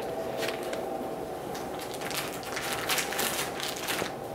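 Irregular crackling and rustling handling noise as a shiitake fruiting block covered in mushrooms is moved and set back onto a wire rack shelf.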